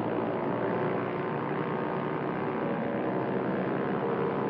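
Propeller aircraft engines droning steadily, a dense noise with many faint steady tones running through it.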